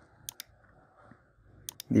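Computer mouse clicking: a close pair of sharp clicks about a third of a second in and another pair near the end, over faint room hiss.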